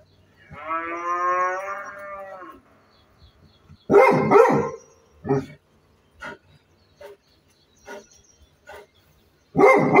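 Black Labrador retriever giving a drawn-out, wavering howl-like whine for about two seconds, then barking: a loud double bark about four seconds in, a single bark after it, a few short quieter barks, and a loud burst of barks near the end.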